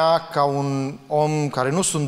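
A man speaking through a microphone, drawing out several long vowels at a steady pitch, like hesitation sounds between words.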